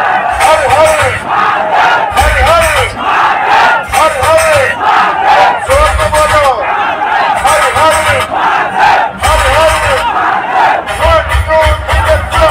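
Loud DJ sound system playing a section of shouted, chant-like vocals with repeated rising-and-falling whoops. Heavy bass hits come in about every three to four seconds.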